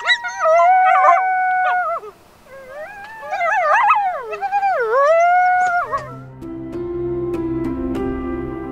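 Coyotes howling and yipping, several wavering voices overlapping for about six seconds. Near the end the calls die away and soft background music with steady held notes takes over.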